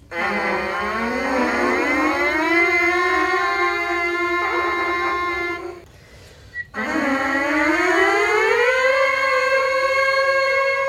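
A group of brass players buzzing on mouthpieces alone in unison as a sound and embouchure exercise. They play two long buzzed notes, each sliding up in pitch and then held, the second going higher, with a brief break between them.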